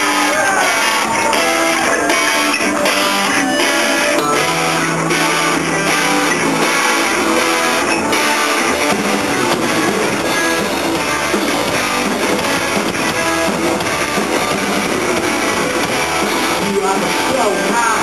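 Live rock band playing amplified: strummed electric guitars, bass guitar and drums, the song having just begun.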